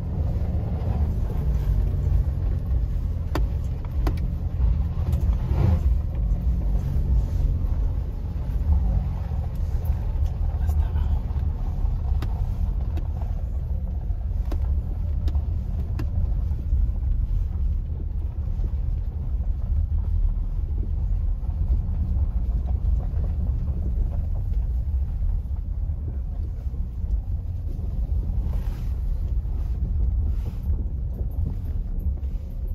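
Car cabin road noise while driving on a gravel road: a steady low rumble from the tyres and body, with scattered small clicks and ticks from loose stones.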